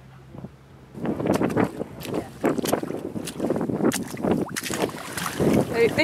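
Faint steady hum of a tracked excavator's engine for about the first second. Then loud, gusty wind buffets the microphone, with sharp thumps and rumble.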